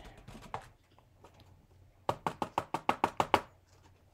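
A quick run of about ten sharp taps on a glossy card stock card, about two seconds in, knocking loose excess clear embossing powder. Before it, a few faint ticks and rustles as the card is tipped.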